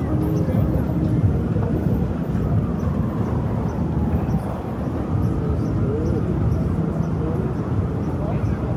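Busy city street ambience: a steady low rumble of traffic with faint chatter of passers-by.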